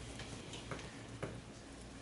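Faint, regular ticks about two a second over a steady low hum of room noise.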